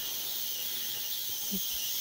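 Ultrasonic cleaner running a cleaning cycle on a circuit board: a steady high-pitched hiss from the bath. A faint short sound comes about a second and a half in.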